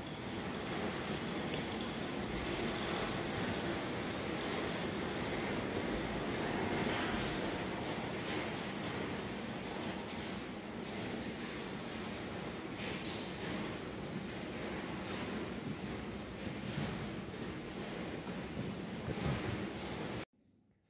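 Steady hiss-like background noise, with a few faint soft handling sounds as a knife is brought to a preserved brain specimen.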